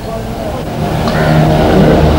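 A steady low engine-like hum with a rumble underneath, growing louder through the pause.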